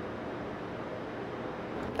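Steady, even rush of moving air from a running fan, with no distinct knocks or clicks.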